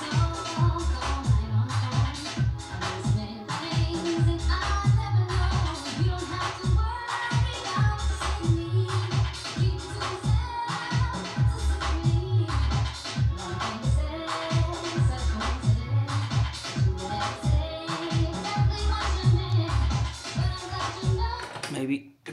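A DJ-mixed music tape with a steady, heavy beat playing back on a Technics RS-BX501 cassette deck through loudspeakers. The music cuts off abruptly at the very end when the deck's transport is stopped.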